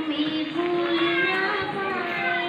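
Children's voices singing a song, the melody held on long notes, with other children's voices over it.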